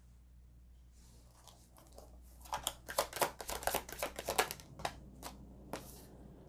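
Tarot deck being shuffled by hand: a quick run of rapid papery card clicks from about two and a half seconds in until about five seconds, then a single card laid down on the table near the end.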